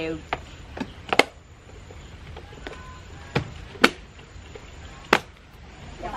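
Clip-lock lid of a plastic food container being pressed on, its latches snapping shut: about six sharp clicks, the loudest about a second in and near four seconds in.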